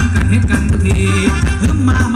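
Loud live band music for Thai ramwong dancing, with a heavy, steady bass line.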